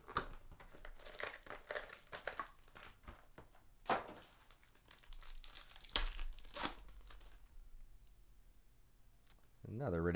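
The foil wrapper of a trading-card pack being torn open and crinkled by hand, with irregular crackling rustles that die down after about seven seconds.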